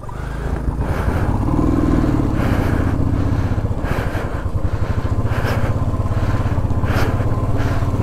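Royal Enfield Thunderbird 350 single-cylinder engine running as the motorcycle rides down a rough dirt track. It grows louder over the first second, then runs steadily.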